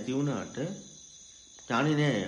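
Steady high-pitched chirring of crickets under a man's voice, which breaks off for about a second in the middle and then resumes.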